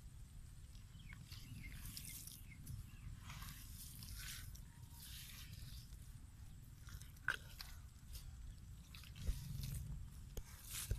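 Hands digging and scooping wet clay mud, with irregular soft squelches and crackles and a sharper click about seven seconds in.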